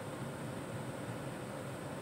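Steady, even hiss of background noise inside a car cabin, with no other event standing out.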